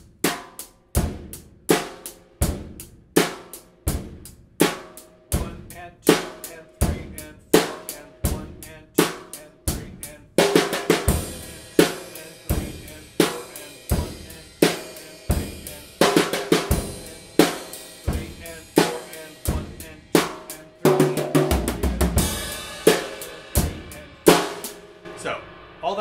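Drum kit playing a basic rock beat: steady eighth notes on the hi-hat over bass drum and a snare backbeat. About ten seconds in, the right hand moves to a ringing cymbal, and a short fill comes near the end.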